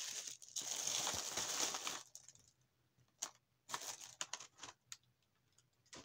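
Packaging rustling and crinkling for about two seconds, then a few scattered light knocks and taps as items are handled.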